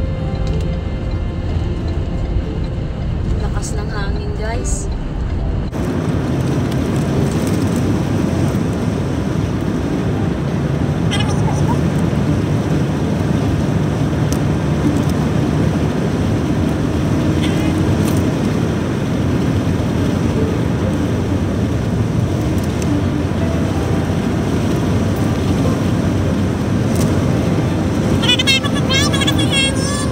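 Strong wind and road noise heard from inside a moving car's cabin, a steady rushing that turns hissier about six seconds in.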